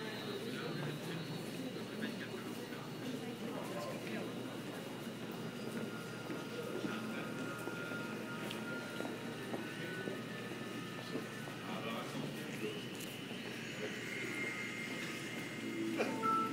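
Ambient noise of a metro station passage: indistinct voices blending into a steady murmur, with faint steady high tones running under it.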